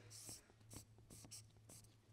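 Felt-tip marker writing on flip-chart paper: a quick run of short, faint, scratchy strokes as letters are drawn, over a low steady hum.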